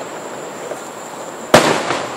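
An aerial firework shell bursting: a single loud boom about one and a half seconds in, with a short echo trailing after it, over steady background noise.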